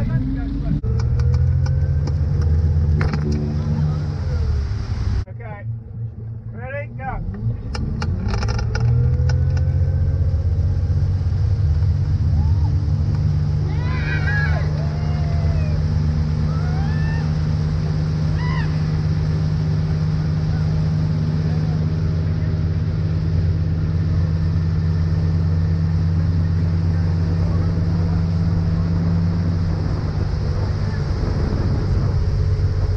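Towboat engine throttling up to pull a rider out of the water, its pitch rising over the first few seconds and again about eight seconds in, then running steadily at towing speed over the rush of the wake.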